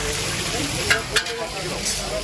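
Chapli kababs deep-frying in a large wide pan of oil, a steady sizzle, with two sharp clicks about a second in and crowd voices behind.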